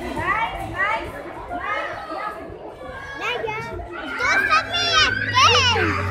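Several children's voices calling and shouting at play, high-pitched and overlapping, busier in the second half.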